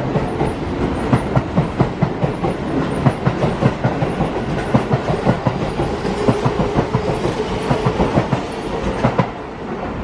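Keihan 8000 series electric train pulling out of the station past the platform, its wheels clacking over the rail joints in a quick, steady clatter over a rumble. The clatter stops about nine seconds in as the last car clears.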